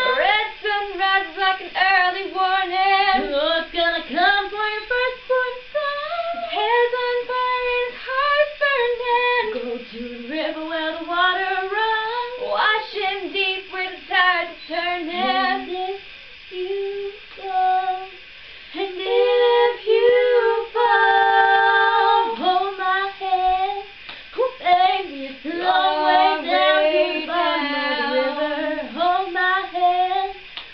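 Two women singing unaccompanied, in harmony at times, with long held notes about twenty seconds in.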